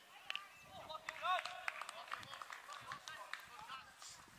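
Footballers' distant shouts and calls across the pitch during play, the loudest a raised shout about a second in. A few sharp clicks are scattered among them.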